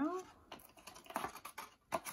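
Light, irregular taps and rustles of a paper letter card and a cardstock mailbox being handled on a table.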